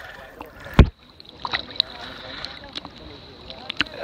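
Seawater sloshing and splashing around a camera held at the water's surface, with one loud thump just under a second in and small splashy ticks after it.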